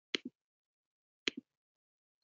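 Two short, sharp clicks about a second apart, each followed by a brief, softer low knock.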